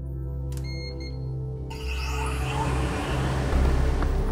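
Air-handling unit that supplies the inflatable ETFE roof cushions being switched on: a click about half a second in over a low steady hum, then a rush of air building from about two seconds as the fans start up.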